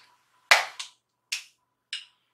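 Makeup products being handled and set down on a table: four short, sharp clacks, the first, about half a second in, the loudest.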